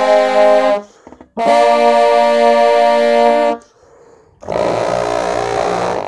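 Three layered trombone parts playing held chords together: a short chord, a long chord held about two seconds, then a rougher, buzzier chord near the end.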